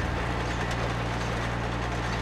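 Tractor engine running steadily, a low even hum.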